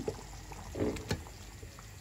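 Wooden ladle stirring a pot of simmering bean and vegetable stew, with faint liquid sloshing and a light knock about a second in.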